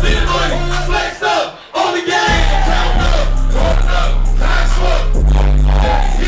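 Live hip hop performance through a PA: a heavy bass-driven beat with a rapper's vocals over it. The beat cuts out for about a second near the start, then drops back in.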